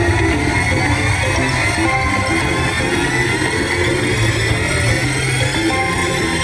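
King of Africa slot machine playing its bonus-round music during free spins: a stack of tones rising steadily in pitch over a low repeating beat as the reels spin.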